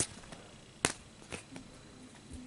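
Pokémon trading cards being handled and set down: a few short, sharp taps and clicks, the loudest a little under a second in.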